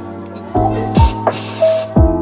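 Espresso machine steam wand purging: a short hiss of steam, then a longer one, about halfway through, over background music.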